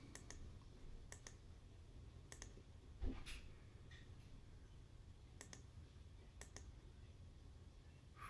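Computer mouse button clicks, each a press-and-release pair, heard about five times as drop-down menu options are picked, over a quiet room; a soft thump about three seconds in.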